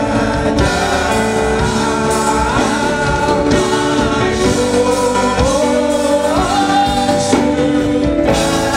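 Gospel choir singing live with keyboard accompaniment, a sustained melody that slides and bends in pitch.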